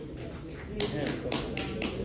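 Soft music with voices beneath. About a second in, a run of sharp taps begins, about four a second and louder than the music.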